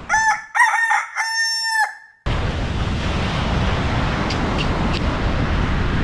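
A rooster crowing: one cock-a-doodle-doo of several notes ending in a long held note, cut off suddenly about two seconds in. Steady surf noise follows.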